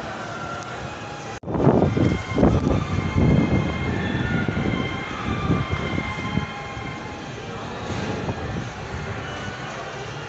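Steady mechanical hum and rumble with faint held tones. It cuts out briefly about a second and a half in, comes back louder and uneven for several seconds, then settles back to a steady hum.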